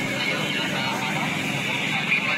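Raw on-scene audio of a burning house: a steady, noisy din with the voices of people at the fire mixed into it.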